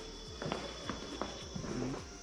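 A few uneven footsteps on a tiled floor, over a steady high hiss.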